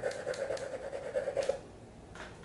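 Gray crayon scribbling on paper: a faint, scratchy rubbing with light ticks from the strokes, stopping about a second and a half in.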